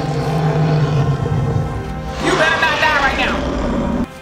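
Episode soundtrack: a low sustained music drone, then about two seconds in a loud cry from the dragon Drogon, one call bending up and down in pitch for about a second.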